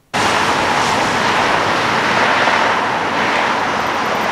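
Steady road-traffic noise from cars driving through a multi-lane street intersection.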